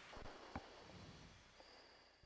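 Near silence: a faint hiss with one soft click about half a second in, fading away.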